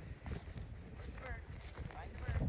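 Open-field ambience: a low rumble on the microphone with soft footsteps through grass, and a brief high pitched call about a second in.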